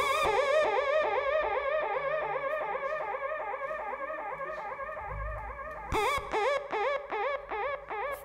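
Electronic dub-siren-style effect from the band's effects desk: a pitched warble pulsing about three times a second, each pulse bending up and back down. A low thump comes just after five seconds, and from about six seconds it is joined by sharp hits.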